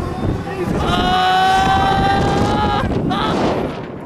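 A rider's long, high scream held for about two seconds, starting about a second in, on a fast-rotating fairground thrill ride, with air rushing over the microphone.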